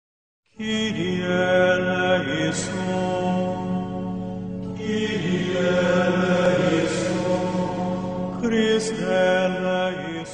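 Chant-like vocal music, voices holding long notes over a steady low drone, starting about half a second in: the programme's opening theme.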